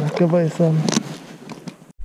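A man's voice speaking briefly for about a second, then much quieter, and the sound cuts off abruptly near the end.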